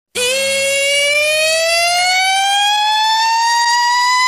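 A single siren-like tone with many overtones starts abruptly and rises slowly and steadily in pitch. It is the build-up at the opening of a music track, ahead of the beat drop.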